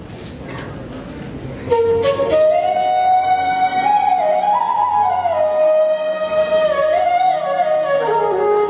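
Low room noise with a few soft knocks, then, about two seconds in, a bamboo transverse flute starts a slow melody of held notes stepping up and down.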